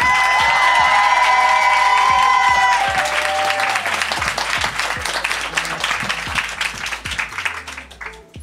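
Live audience applauding, with clapping that gradually fades. Over the first three seconds the opening theme music ends on a held note.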